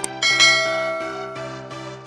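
A sharp mouse-click sound followed by a bright bell chime that rings out and slowly fades: the click-and-notification-bell sound effect of a subscribe-button animation, over background music.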